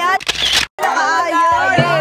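A smartphone camera shutter sound, one short noisy click-burst about a third of a second in, followed by a brief dropout, amid voices.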